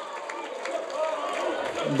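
A small stadium crowd of football supporters cheering and shouting from a distance, celebrating a goal just scored by the home side.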